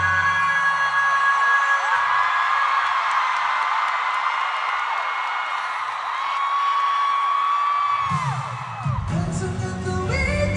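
K-pop concert music over an arena PA, heard from the stands. The bass drops out for several seconds while the crowd screams and cheers over the held melody, then the full beat comes back near the end and singing starts.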